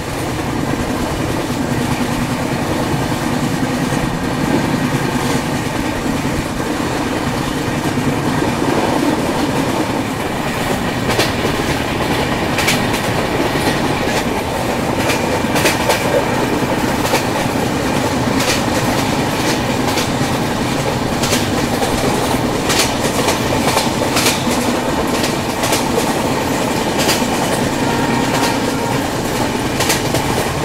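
Passenger train running at speed, heard from on board: a steady rumble of the coach's wheels on the track. Through the second half, sharp irregular clicks of the wheels passing over rail joints come through.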